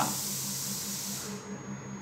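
A pause between speech filled with steady background hiss and a faint low hum. The hiss drops away about a second and a half in.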